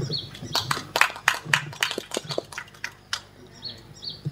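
Paper being handled and folded close to a handheld microphone: a quick, irregular run of sharp crackles and clicks that stops a little past three seconds in. A few faint short high chirps come near the start and the end.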